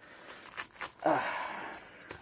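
Scissors snipping into a thin plastic comic polybag: a few short snips, then the plastic crinkling for about a second.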